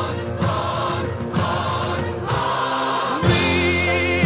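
Music with a choir singing over a steady bass line; a high wavering voice comes in near the end.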